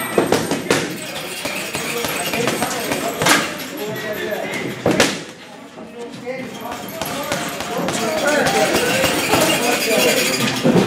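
Boxing gloves striking a double-end bag: a few sharp smacks, spaced irregularly, the loudest about three and five seconds in.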